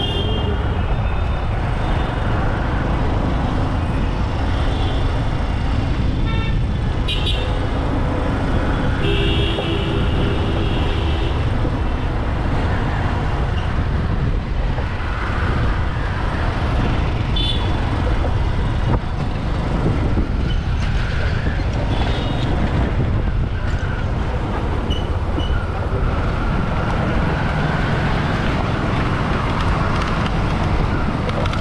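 Road traffic heard from a moving vehicle: a steady low rumble of engine and road noise, with vehicle horns tooting several times, the longest held for about two seconds.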